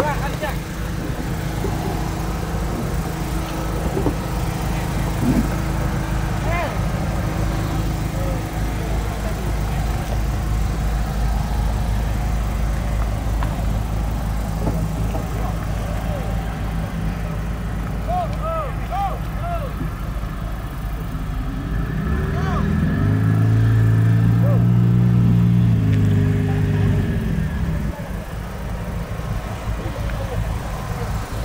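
Fishing boat's inboard engine idling steadily. From about two-thirds of the way in, a louder engine note swells for several seconds, rising then falling in pitch as it is throttled up and back down.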